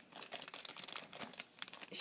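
Faint crinkling of packaging being handled, a dense run of small crackles.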